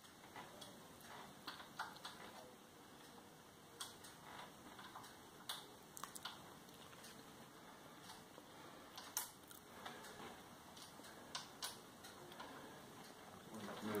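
Faint, irregular clicks of a small hex key on the clamp screws of a mountain bike's handlebar controls as they are being tightened.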